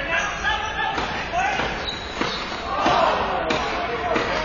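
Ball hockey game in play: players' voices calling across the rink, with a few sharp knocks of ball and sticks on the plastic tile floor and boards in the second half.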